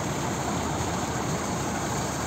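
Tractor-driven corn thresher running steadily, a constant rushing noise, as shelled corn kernels stream from its delivery pipe onto a pile in a trailer.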